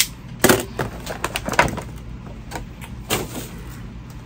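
Plastic and cardboard toy packaging rustling and scraping as an action figure is worked out of its box, in several short crackles.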